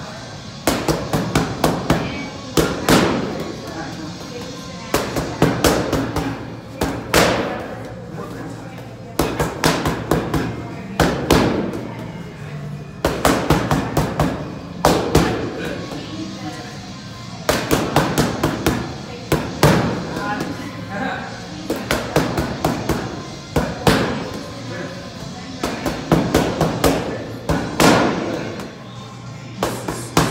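Boxing gloves striking focus mitts in quick combinations: sharp pops in bursts of several punches, with short pauses between bursts, over background music.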